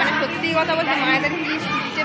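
Chatter of many children's voices overlapping in a schoolyard.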